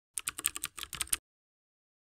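Keyboard typing sound effect: a quick run of about ten keystroke clicks over about a second, stopping abruptly halfway through.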